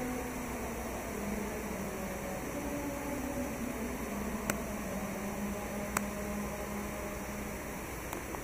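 Steady rushing noise of water pouring down the Dubai Mall's multi-storey indoor waterfall, with two sharp clicks about four and a half and six seconds in.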